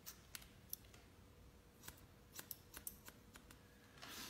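Faint, crisp snips of hairdressing scissors cutting a section of wet hair. There are three snips in the first second, then a quicker run of about eight from about two seconds in.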